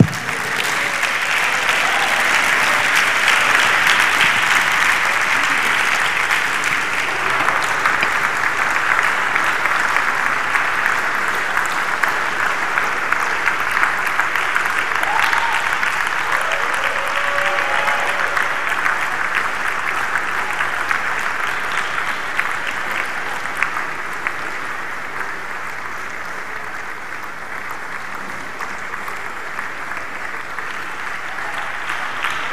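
Large audience applauding: sustained clapping, loudest in the first few seconds and slowly tapering off, with a few scattered voices calling out.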